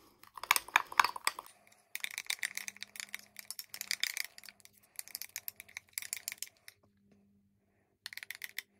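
A metal knife stirring thick frosting in a square glass dish, clinking and scraping against the glass in rapid runs of light clicks. The clicking stops shortly before the end.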